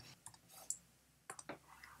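Near silence with a few faint, short clicks: one a little before a second in, then two close together past the middle.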